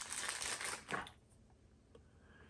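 Clear plastic bag crinkling as a small bottle is unwrapped from it, stopping about a second in.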